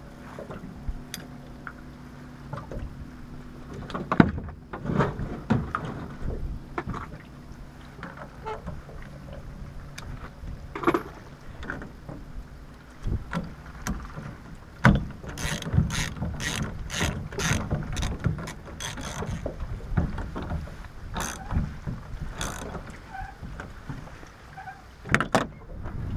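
Ratchet wrench tightening the centre nut of a boat steering wheel onto its helm shaft, with a few metal knocks as the washer and nut go on, then a run of quick, evenly spaced ratchet clicks in the second half.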